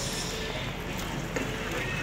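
Diced onions sizzling in hot oil in a pot while being stirred with a spatula, with a couple of light knocks of the spatula against the pot about a second in.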